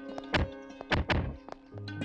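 Film background score with heavy drum hits: three loud, ringing strikes, the last two close together, over sustained musical tones.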